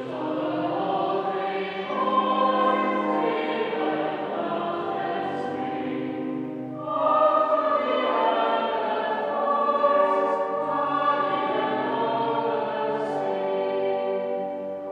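Choir singing sacred music, sustained phrases in a reverberant church, with a louder new phrase beginning about seven seconds in.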